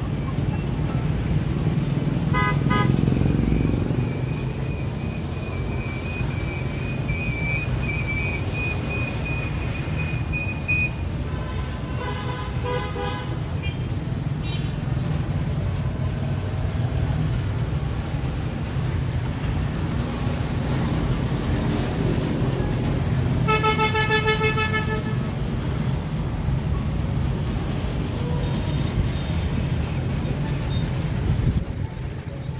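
Street traffic rumbling steadily, with vehicle horns honking several times; the longest and loudest honk comes about 24 s in and lasts over a second.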